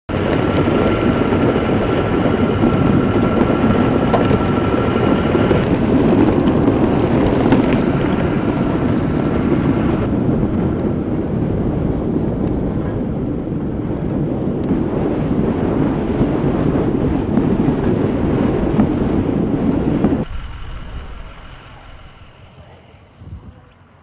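Loud steady rushing noise with no voices, heard in several spliced stretches, with a faint steady tone under the first part. It drops away sharply about twenty seconds in.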